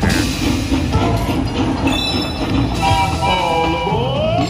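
Slot machine train sound effect: a rhythmic steam-locomotive chugging, joined from about two seconds in by a several-note train whistle, as the train symbol lands in the bonus to collect the coin values.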